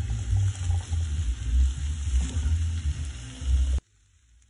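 Curried potatoes and chickpeas sizzling in a stainless steel frying pan while a silicone spatula stirs them. The sound cuts off suddenly near the end.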